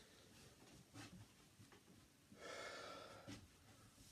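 Mostly near silence, broken by a short breath out lasting most of a second, just past the middle, from a man starting a set of bodyweight squats. There is a faint thump about a second in and a small knock just after the breath.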